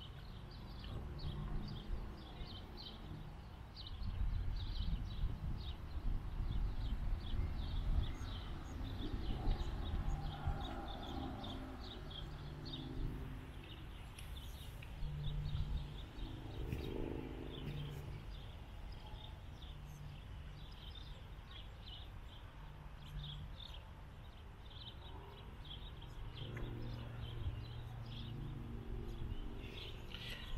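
Outdoor ambience: repeated short high chirps from small birds over a low rumble, the rumble loudest between about four and twelve seconds in.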